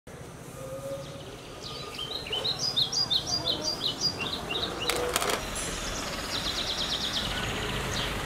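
Birds singing outdoors: a run of short, repeated high chirping notes, then a fast high trill, with a brief clatter about five seconds in, over a faint low background hum.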